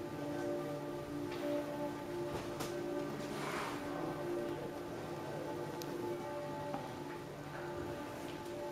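Pipe organ playing sustained chords, the held notes steady through the reverberant church, with a brief rustle from the audience about halfway through.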